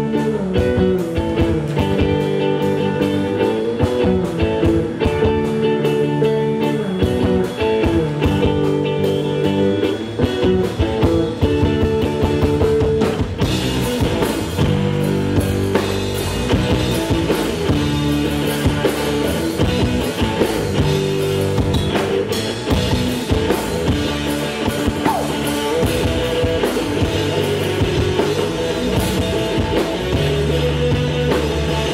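Live rock band playing an instrumental passage: electric bass, electric guitar and drum kit. The sound grows brighter about halfway through.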